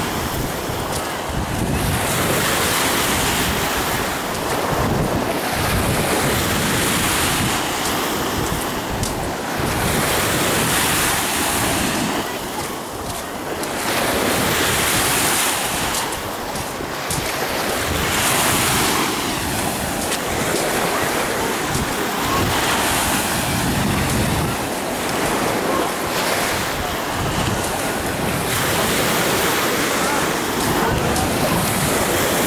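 Small waves washing onto a sandy shore, with wind buffeting the microphone; the wash swells and fades every few seconds.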